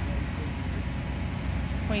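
Steady low rumble of engines running in the background, with no distinct events.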